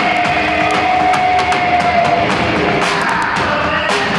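Live industrial rock band playing loud, with the drummer's Tama drum kit and Zildjian cymbals crashing throughout. A long held note slowly falls in pitch and stops about halfway through.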